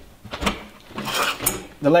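Tubular metal legs of a folding camp table being swung open from under the tabletop: a few sharp clicks and knocks, then a short metallic rattle as a leg comes free.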